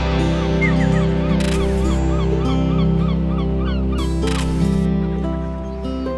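Alt-country band music with long held chords under a quick, repeating chirping figure, about four notes a second, and two brief hissing swells.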